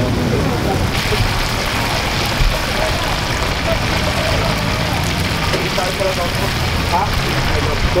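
Chicken pieces deep-frying in a large wok of hot oil, a steady sizzle that grows louder about a second in, over background voices.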